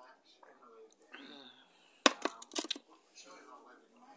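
A quick cluster of hard knocks and clinks about two seconds in, lasting under a second, as a drinking glass is set down on a hard surface.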